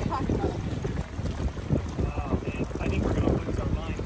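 Wind rumbling and buffeting on the microphone, gusty and uneven, with faint snatches of voices.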